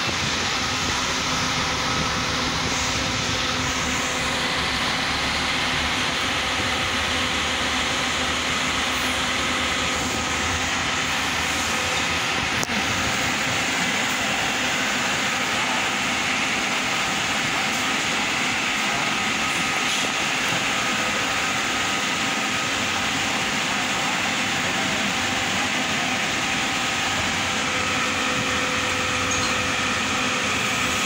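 Steady drone of a parked Marcopolo coach idling at the bay, engine and air-conditioning running, with a faint even hum in it.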